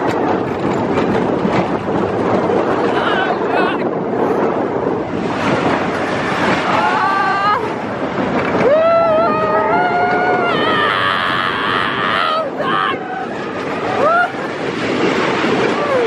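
Expedition Everest's steel roller coaster train rumbling along its track at speed. Riders yell and scream over it, in gliding cries from about six seconds in and again near the end.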